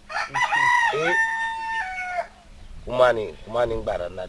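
A rooster crows once, a single call of about two seconds that rises, holds high and then drops in steps. A man speaks briefly after it.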